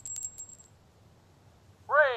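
A coin dropping into a coin-operated fortune-telling machine: a quick run of small metallic clinks with a high ringing tone, over in about half a second. Near the end comes a short, loud voice-like sound that falls in pitch.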